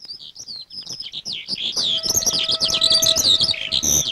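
Many birds chirping and twittering together, a chorus of short quick calls that grows fuller about halfway through, with a faint steady tone underneath. A brief low knock comes right at the end.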